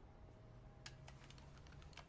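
Near silence: faint room tone with a few soft, scattered clicks about a second in.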